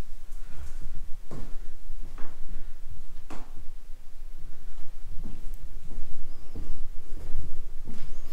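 Footsteps on hard floors: an uneven knock about once a second, over a steady low rumble.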